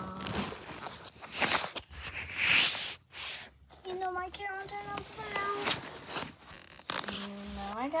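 A plastic bag rustling and crinkling as toys are rummaged through, in loud bursts over the first few seconds. A child's short pitched vocal sounds follow, then the start of speech at the end.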